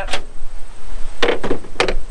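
A sharpening stone being pulled out of its metal bracket on a truck and handled: a short click at the start, then two sharp knocks, one just over a second in and one near the end.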